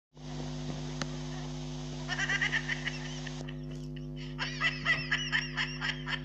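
A man's high-pitched, rapid giggling laughter in two bouts, the first about two seconds in and the second from about four and a half seconds, over a steady low electrical hum.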